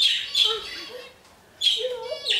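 Pet budgerigar calling in three short bursts, at the start, about half a second in, and again near the end after a brief pause.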